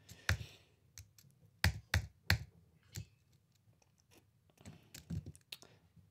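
Computer keyboard keystrokes: a handful of separate sharp taps, the louder ones in the first three seconds, then a quick run of lighter clicks near the end.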